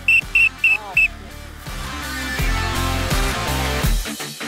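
Referee's whistle blown in a quick run of short, sharp blasts during the first second, then background music swelling louder toward the end.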